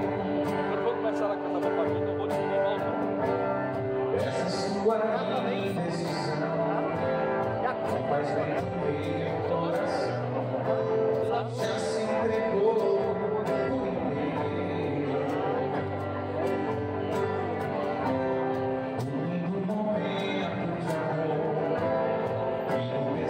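Live band performing a song: a man singing over acoustic guitar and other string instruments.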